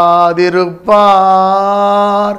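A man singing a Tamil Christian devotional song unaccompanied, in long held notes at a steady pitch. One note ends just after the start, and after a short breath a second is held from about a second in.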